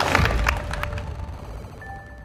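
A small group clapping by hand, the claps irregular and dying away over the first second or so. A soft steady musical tone comes in near the end.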